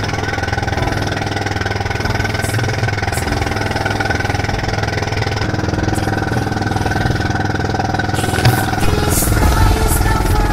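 Motorized outrigger boat's engine running steadily at cruising speed, over the rush of water, with louder splashing of spray in the last couple of seconds.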